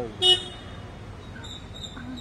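A short, loud vehicle horn toot about a quarter second in, over a low background hum.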